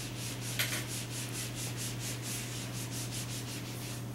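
A felt whiteboard eraser rubbed fast back and forth across a whiteboard to wipe it clean, about five strokes a second, starting with a sharper scrape about half a second in.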